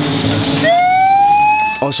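A megaphone siren starts a little after a quarter of the way in: one clean tone that slides quickly upward, then holds steady. Beneath it runs the engine of a Puch Maxi, a small two-stroke moped.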